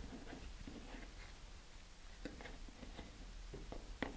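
Faint rustling and a few light ticks from fingers handling a thin shock cord against a cardboard motor mount tube while tying a knot.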